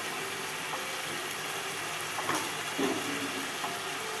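Steady hiss of a pot of chicken curry cooking on the stove.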